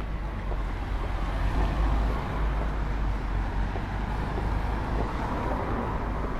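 City street traffic: passing cars and buses heard as a steady rumbling hiss, a little louder about two seconds in and again near the end.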